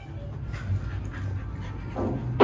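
A dog making a few short, soft sounds, over a steady low hum.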